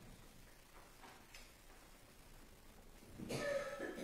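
Hushed church room tone during a pause for silent prayer, then near the end a short cough from someone in the room.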